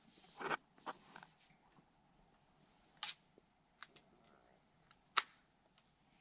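Aluminium beer can being handled in a koozie: a brief rustle at the start, then a few scattered sharp clicks and taps as a finger works at the pull tab, the loudest about five seconds in.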